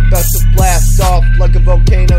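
Hip-hop track: a male voice raps over a trap-style beat with a heavy sustained sub-bass and punchy drum hits.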